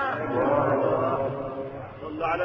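A soft, chant-like murmur of several male voices right after a phrase of Qur'an recitation ends, fading over the two seconds: the listeners' response in a live recitation.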